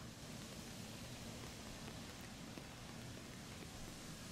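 Steady hiss of light rain, with a low rumble underneath.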